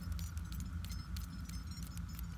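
Faint, scattered light clicks and clinks of a stainless-steel ladle, funnel and bottle being handled as makgeolli is ladled from the pot into a bottle, over a steady low hum.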